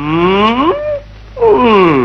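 A man's voice in two drawn-out exclamations: the first slides steadily up from low to high pitch over about a second, and the second, shortly after, slides back down.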